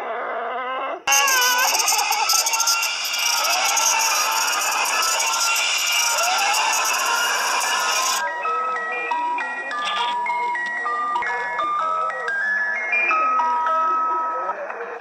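Horror-video soundtrack. A voice is heard for about a second, then a sudden loud, harsh distorted noise with wavering pitch glides starts. That noise cuts off about eight seconds in and gives way to a simple melody of short, stepped notes.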